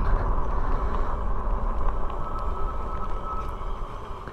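Riding noise from a fat-tire e-bike on pavement: wind rushing over the microphone and the wide tires rumbling on cracked asphalt. A faint steady whine comes in about halfway through for a second or so, and the rumble eases off toward the end.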